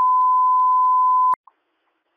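A single steady, pure beep lasting about a second and a half, then cut off abruptly with a click: a fire dispatch alert tone sent over the radio channel ahead of a dispatch, heard through a radio scanner.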